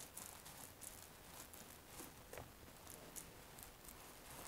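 Faint, irregular sticky crackling of a 3/8-inch nap paint roller pushing thick Laticrete Hydro Ban liquid waterproofing membrane across a shower wall.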